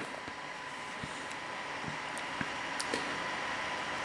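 Quiet room background: a steady low hiss with a faint high whine running under it, and a few soft clicks.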